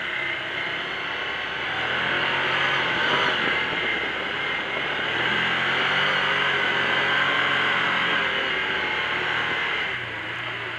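Can-Am Commander 800 side-by-side's V-twin engine running under throttle while driving over dirt, with wind and tyre noise from inside the open cab. The engine note rises and gets louder about two seconds in, then holds steady.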